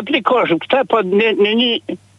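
Speech only: a caller talking over a telephone line into a studio broadcast, the voice thin and narrow like a phone call.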